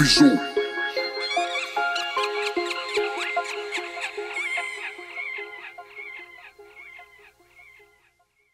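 The hip-hop beat cuts off just after the start, leaving a sinister laughing voice, a quick run of high, pitch-bending 'ha's, that fades away over several seconds until it is gone near the end.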